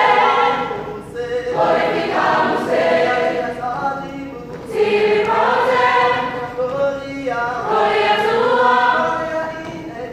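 High school chorus of mixed voices singing, in long held phrases with brief breaks between them.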